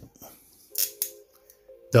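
Plastic action-figure joints clicking as the leg is worked by hand: two sharp clicks about a second in, with fainter ticks before them, over quiet background music.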